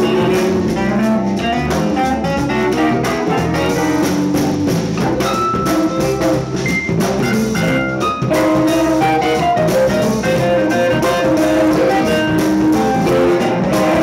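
Live jam-band music: electric violin and electric guitar playing over a drum kit and keyboards, with some long held high notes in the middle.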